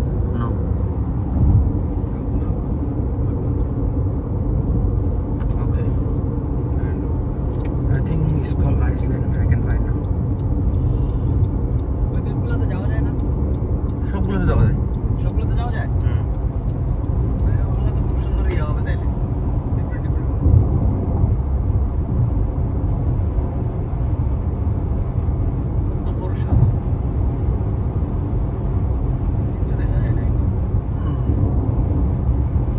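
Road and engine noise inside a moving car's cabin: a steady low rumble from tyres and engine while driving on an expressway.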